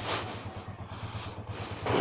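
Motorcycle engine running at low revs, a steady low hum under wind and road noise.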